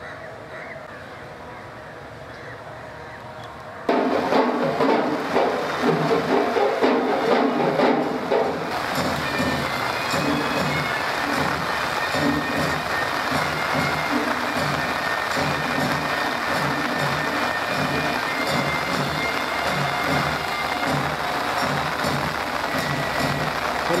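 A low murmur of voices, then about four seconds in, loud drumming with a steady beat starts suddenly, with a few high held instrumental tones over it, and goes on throughout.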